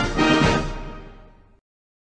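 Music fading out and ending about one and a half seconds in, followed by silence.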